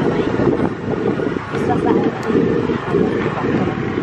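A motor vehicle's engine running hard under load, its level pulsing unevenly, as it climbs a steep dirt track.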